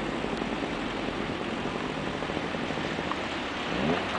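Steady roar of breaking ocean surf mixed with wind noise on the microphone. A short rising whine comes in near the end.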